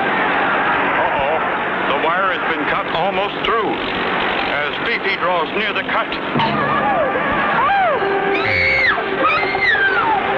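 Cartoon soundtrack of a biplane's steady engine drone with music over it. Short rising-and-falling voice calls run through the middle. From about eight seconds in there is a long held tone with higher swooping cries above it.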